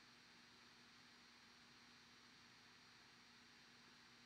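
Near silence: room tone, a faint steady hiss with a low electrical hum.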